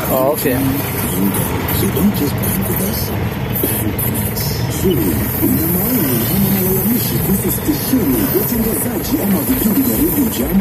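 Minibus engine idling in stop-and-go traffic, heard from inside the cab, under a steady mix of voices and music.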